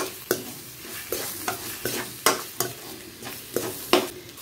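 Metal spatula scraping and clinking against a steel pan, about two to three strokes a second, as fried elephant-yam pieces are stirred into masala, with the oil sizzling underneath.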